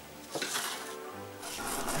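Faint ukulele music in a pause between speech, with a short hiss about half a second in.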